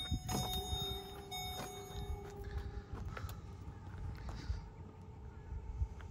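Power liftgate of a 2007 Lincoln Navigator L closing under its electric motor, a steady two-tone hum, with scattered footsteps.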